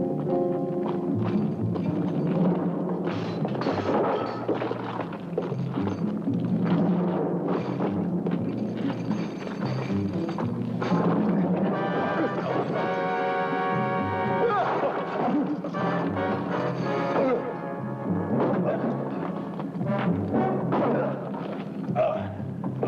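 Film score music with drums, and a held chord near the middle. Thuds from a fistfight come through under it.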